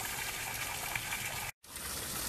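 Small shallow stream running over a riffle: a steady rush of water. It cuts off suddenly for a split second about one and a half seconds in.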